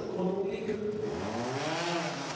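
Trials motorcycle engine running and being revved, its pitch climbing in the second half as the rider accelerates into the obstacle.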